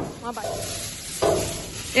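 Close rustling and scraping from objects being handled and moved about, with brief snatches of a voice in the background.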